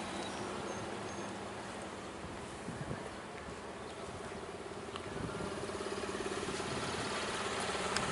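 A vehicle engine idling, a steady low hum with a buzzing tone that comes in about three and a half seconds in and grows slightly louder.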